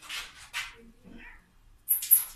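A cat crying out while being restrained and handled: two short harsh cries near the start, a fainter cry about a second in, then a sharp, loud cry at the very end.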